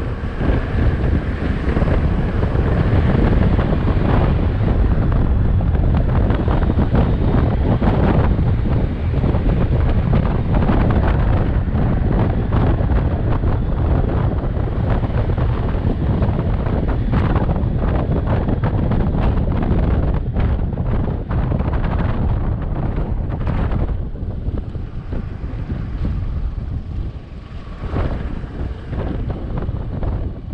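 Wind buffeting the microphone over the steady running of a 250cc scooter engine on the move. It turns a little quieter in the last few seconds as the scooter slows.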